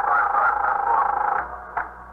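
A telephone ringing steadily for about a second and a half, then stopping, with a short click near the end as the receiver is picked up.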